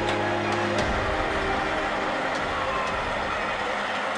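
Fire engines' engines running steadily in the street: a continuous low engine hum.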